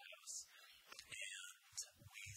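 Faint, whispery voice sounds with no clear words: soft breathy hisses and brief murmurs.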